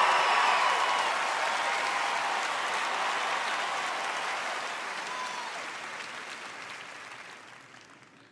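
Large theatre audience applauding, dying away gradually over several seconds.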